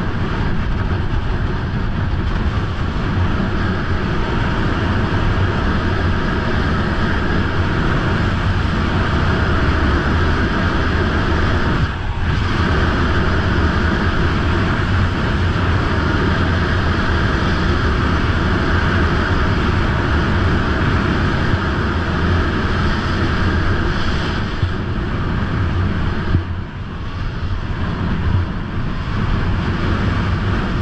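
Wind rushing over an action camera's microphone during a fast snowboard descent, mixed with the board scraping over groomed snow. The steady noise dips briefly about twelve seconds in and again a few seconds before the end.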